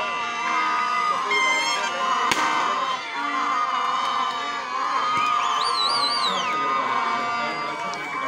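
Crowd of spectators, many of them boys, cheering and shouting over several long steady tones. A sharp bang comes a little after two seconds in, and a high warbling whistle sounds from about five to six and a half seconds.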